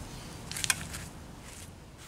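Low steady background hum with a brief cluster of sharp clicks about half a second in. The engine is not running.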